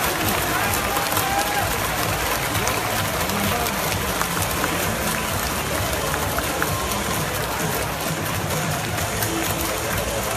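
Large baseball-stadium crowd after a home run: a steady dense din of many voices with scattered claps.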